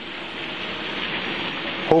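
Heavy rain falling steadily, heard as a constant hiss, with a short sharp click near the end.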